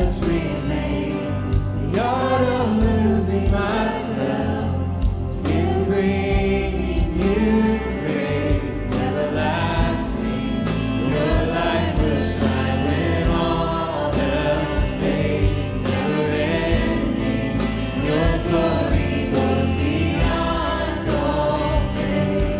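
Live church worship band playing a contemporary worship song: singers with backing vocals over guitars, bass, piano and drums with a steady beat.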